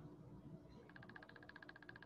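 Near silence: room tone, with a faint rapid pulsing buzz from about a second in.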